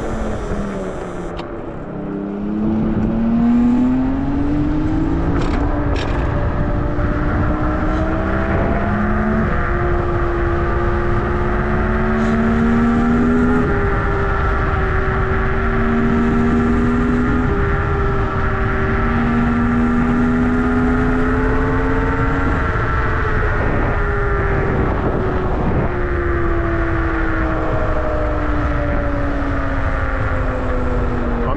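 Nanrobot LS7+ electric scooter's hub motors whining over wind noise on the microphone while riding. The whine falls as the scooter slows at a stop, rises as it accelerates away about two seconds in, holds steady while cruising, then falls again near the end as it slows.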